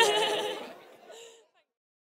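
A woman and a man laughing together, the laughter fading out over about a second and a half before the sound cuts to dead silence.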